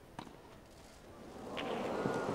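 A tennis racket strikes the ball once, a sharp pop, with a fainter second hit about a second and a half in. The crowd's noise then swells as the rally goes on.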